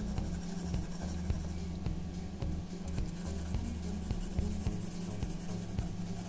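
Graphite pencil rubbing on drawing paper in light shading strokes, a soft repeated scratching hiss, over background music.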